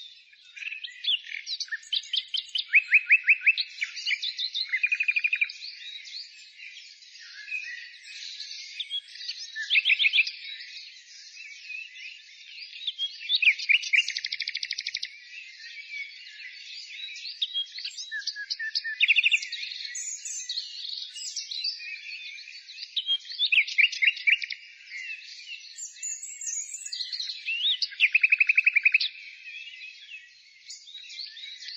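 Several songbirds singing together: a continuous chorus of chirps and twitters, with a loud, fast trill breaking in every few seconds.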